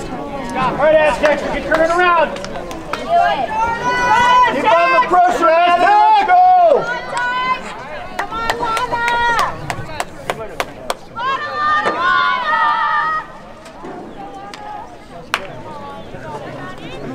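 High-pitched girls' voices shouting and cheering at a lacrosse game, loud and drawn out, with a run of sharp clicks in the middle; the shouting dies down near the end.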